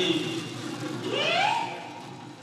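Assamese Bihu folk music accompanying a dance: a held pitched note dies away, then about a second in a single pitched call glides upward and trails off.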